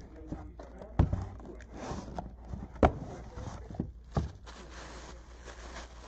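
A small cardboard box being opened and handled by hand: sharp knocks and taps of cardboard about one, three and four seconds in, then a stretch of rustling near the end as a bag is pulled out of it.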